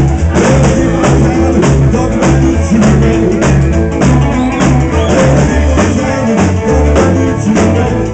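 Live rockabilly band playing: electric guitars, electric bass and drum kit keeping a steady, driving beat, loud and continuous.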